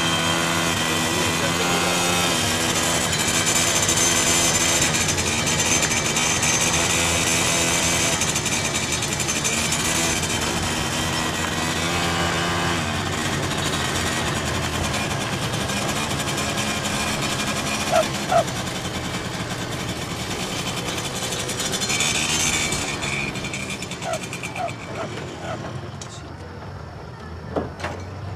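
Small motorcycle engine running as it is ridden, its pitch stepping up and down with the throttle; the sound fades away near the end.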